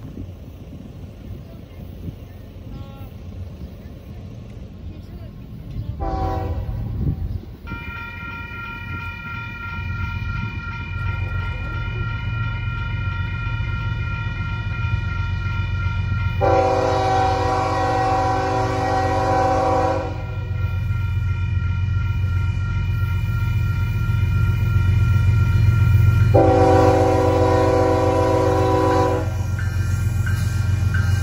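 Union Pacific diesel locomotives approaching with a gravel train. The horn sounds a short blast about six seconds in, then a steady fainter chord, then two long loud blasts in the second half. Under the horn, the deep rumble of the engines grows steadily louder as the train nears.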